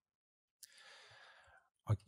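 A man's faint breath in close to the microphone, a soft hiss lasting about a second, then his voice starts again right at the end.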